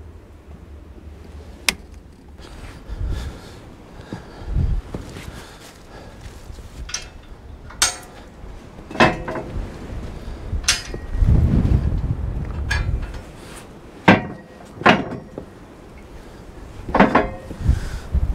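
Irregular metal clanks and knocks as the steel bars and rails of a creep feeder frame are handled and shifted, with softer bumps between the sharper strikes.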